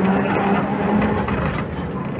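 An N3 tram running, heard from inside the car: steady rumble and rolling noise with a hum that rises slightly in pitch.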